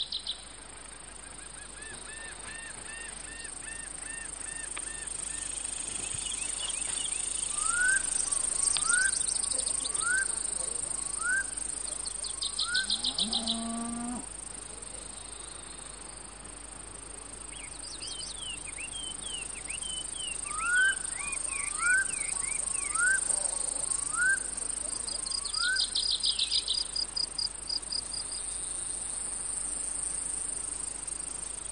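Crickets making a steady high drone, with birds calling over it: two series of five rising whistled notes, each under a second apart, and bursts of rapid high trills. A short low honk sounds about halfway through.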